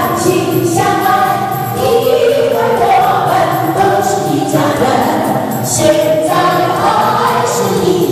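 Many voices singing a song together in unison, choir-like, with music, in a steady flow of held notes.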